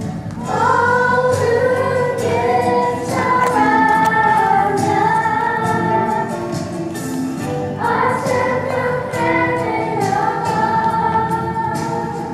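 Live musical-theatre song: voices singing held, gliding notes over a band accompaniment with a steady beat.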